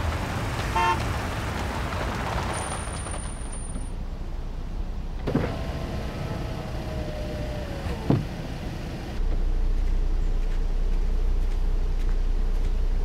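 A car's electric power window running for about three seconds, its motor whine sinking slightly in pitch, and stopping with a clunk as the glass reaches the end of its travel. After that a steady low engine rumble.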